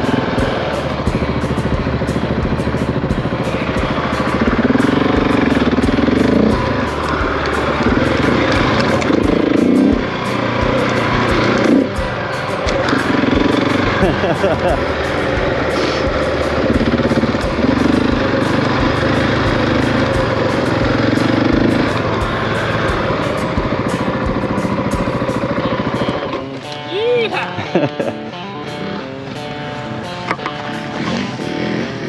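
Husqvarna 701's single-cylinder engine running under way across rough ground, with wind and road noise, then dropping to a lower, quieter run about 26 seconds in as the bike slows to a stop.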